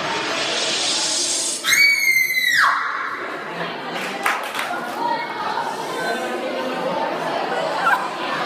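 Audience of schoolchildren chattering and shouting in a hall, with one loud, high-pitched held sound about a second long that drops away at its end, followed shortly by a couple of sharp knocks.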